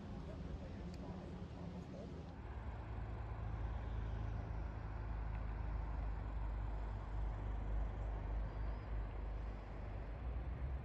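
Quiet room tone, then about two seconds in a steady low rumble of outdoor ambience.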